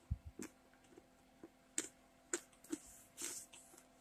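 Someone chewing a chocolate-covered pretzel and caramel cluster: a few faint, sharp crunches of crispy pretzel, spaced irregularly, after a soft thump at the start.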